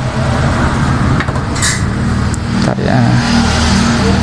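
A motor vehicle engine runs steadily, from road traffic close by, with a low continuous hum. A few light metallic clicks sound over it, about a second in, again shortly after, and near three seconds: a screwdriver working a bolt on the printer's metal carriage frame.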